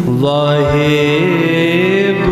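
Shabad kirtan: a male voice sings held notes that glide up and down, over the steady drone of harmoniums, with tabla strokes underneath.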